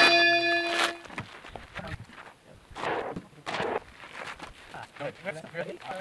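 A bell-like chime rings and fades out about a second in, matching the pop-up score graphic. Indistinct voices talking follow.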